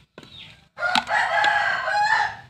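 A rooster crows once: one long call of about a second and a half that starts near the middle and is louder than the nearby talk.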